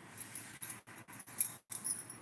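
Bangles on a woman's wrists jingling in short, irregular bursts as her hands knead bare feet, over a faint rustle of hands rubbing skin.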